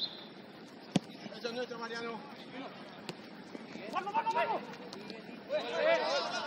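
Footballers shouting and calling to each other across the pitch, several short voices, with one sharp knock of a ball being kicked about a second in.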